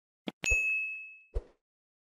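Stock sound effects for an on-screen subscribe animation: a quick double click, then a bright bell ding that rings out for about half a second, and a soft pop near the end.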